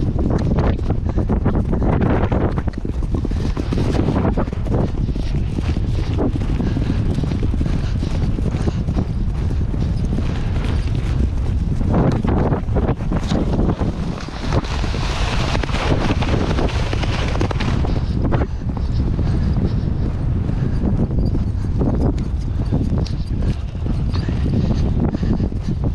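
A pony galloping on turf, its hoofbeats close and rapid, under heavy wind noise rumbling on the microphone.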